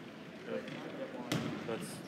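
A basketball bouncing once, sharply, on a hardwood gym floor a little past halfway through, over indistinct voices echoing in the gym.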